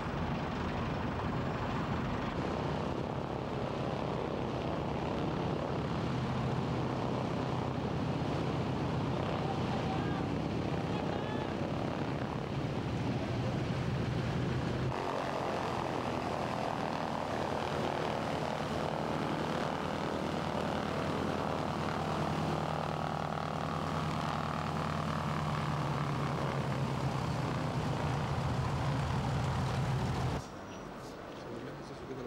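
The twin radial piston engines of a 1935 Lockheed Electra 10-E running steadily, loud propeller-engine drone. About halfway through, the sound shifts abruptly to a stronger, more tonal engine note.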